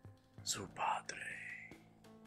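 A voice whispering a short line in Spanish, "Su padre...", over soft background music.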